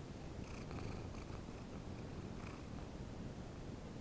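Domestic cat purring close to the microphone, a steady low rumble, with a few brief higher sounds over it in the first half and again about two and a half seconds in.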